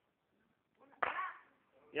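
A small explosive device burning in a box gives a sudden burst of noise about a second in that fades within half a second. A short vocal 'umn' from a person follows at the end.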